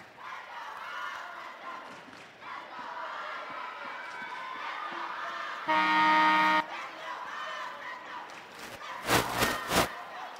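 Gym crowd chatter during a timeout. Just under 6 s in, the gymnasium scoreboard horn sounds once, steady and loud, for just under a second. Near the end comes a short, loud burst of crowd noise with three quick peaks.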